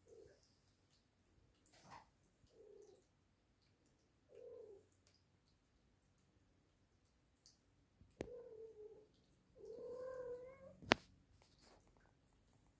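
Kittens mewing faintly: a few short mews in the first half, then two longer meows about eight and ten seconds in. Two sharp knocks land just before the first long meow and just after the second.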